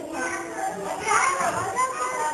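Young children's voices talking and calling out over one another, with a few drawn-out, sing-song notes.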